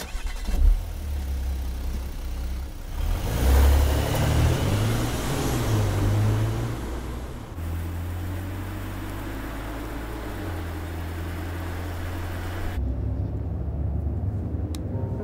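Car engine starting with a sudden burst, revving up as the car pulls away, then running steadily. Near the end the sound turns duller, as heard from inside the cabin.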